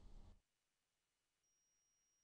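Near silence: faint low room noise cuts off just under half a second in, leaving dead silence.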